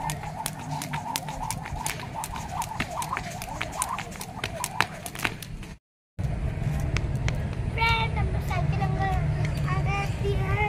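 Skipping rope slapping the brick paving in a quick, regular rhythm of sharp clicks, several a second, for about the first six seconds. After a short break, a child's voice and a steady low rumble follow.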